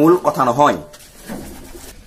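A man speaking Assamese, breaking off after one word; in the pause that follows, a soft, low pitched sound is heard for about half a second.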